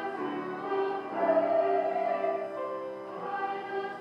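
A hymn sung by voices with keyboard accompaniment, moving slowly from one held chord to the next.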